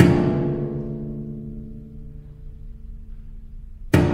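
Solo cello: a loud, sharply attacked low chord that rings on and slowly fades, followed near the end by another hard-struck chord.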